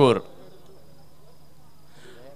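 A steady faint background buzz with a low hum under it, after the last syllable of a man's word at the very start.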